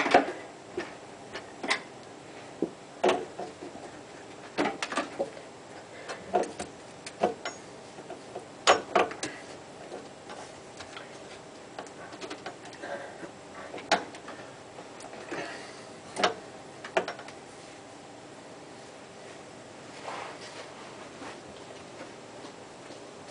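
A screwdriver levering and tapping against the mounting-ring lugs of a Badger 1 garbage disposal to twist the stuck unit loose: irregular metal clicks and knocks, a few sharper ones near the start and about nine seconds in, thinning out in the last few seconds.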